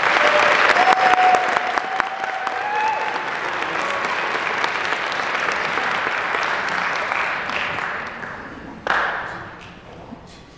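Audience applauding, the clapping gradually dying away in the last few seconds, with a short final flurry near the end.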